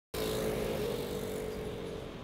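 City street traffic: passing vehicles, with one engine's steady hum standing out over the road noise and easing off slightly.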